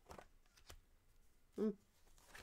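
Tarot cards being shuffled and flicked in the hands, a few soft card clicks, followed near the end by a short hummed "hmm".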